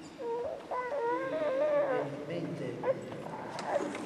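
A high, wavering voice-like cry lasting about two seconds early on, followed by a few faint clicks.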